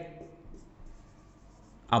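Marker pen writing on a whiteboard: faint, short strokes.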